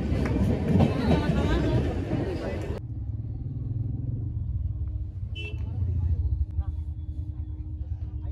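Voices and hubbub on a busy railway platform, then an abrupt cut about three seconds in to a steady low engine rumble inside a Mahindra car's cabin.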